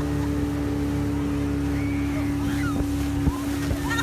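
Towing motorboat's engine running steadily at speed, a constant drone with wind and rushing water over it.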